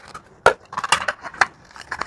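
Red plastic plates being pulled off a stack and handled, a string of sharp clacks and knocks, the loudest about half a second in.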